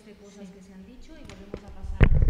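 Faint, indistinct voices murmuring in a hall, with a few soft knocks near the end.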